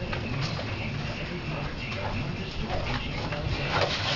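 Faint talking in the background, with a few light knocks, the clearest near the end.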